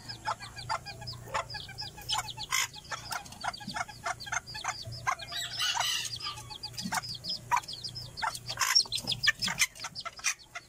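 Serama bantam hen clucking while her two chicks peep over and over in short, high chirps, with light clicks of pecking at a feed dish. The hen is a mother guarding her chicks and is described as a bit aggressive.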